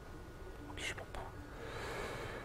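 Faint clicks of a laptop keyboard as a short command is typed, over a steady low room hum, with a soft breathy sound near the end.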